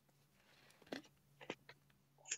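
Near silence on a call line, with a faint steady hum and a few short faint clicks about halfway through.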